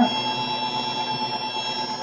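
Rotary screw air compressor with a permanent-magnet motor on a variable-frequency drive running steadily: a high whine of several constant tones over a low hum.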